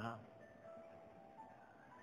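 A pause in a man's preaching: his last word trails off, then near silence with faint sustained keyboard-like music notes in the background.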